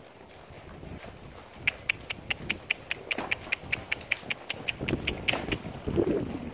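Saddled mules trotting around a sand arena. From about two seconds in there is a quick, even clicking in time with their gait, about five clicks a second, with softer hoofbeats underneath.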